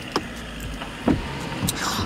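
Car's electric window motor running as a window is wound, a steady hum over low wind rumble on the microphone.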